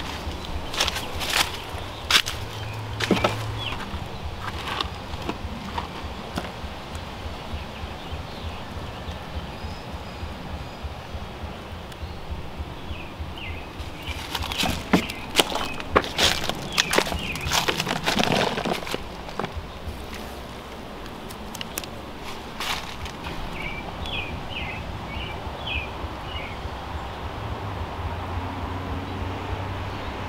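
Gloved hand digging into and scooping moist compost thick with black soldier fly larvae, giving crumbly rustling and crackling in two spells, near the start and about halfway through. Birds chirp faintly now and then.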